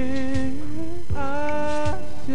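Male singer vocalising without words, humming-like, into a microphone over a soft R&B backing track, holding two long notes; the first bends slightly upward.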